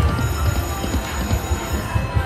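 Video slot machine spinning and stopping its reels, with electronic sounds and jingle over the steady din of a busy casino floor.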